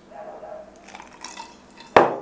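A person gulping a drink from a glass, with soft wet swallowing sounds, then a single sharp clink near the end as the glass is set down.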